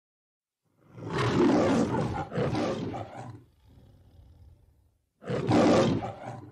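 Two roars in the manner of the MGM lion's logo roar. The first comes about a second in, the second about five seconds in, and a quieter low growl sits between them.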